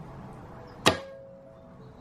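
A wire soap cutter slicing down through a loaf of activated-charcoal cold-process soap, giving one sharp clack about a second in followed by a brief ringing tone.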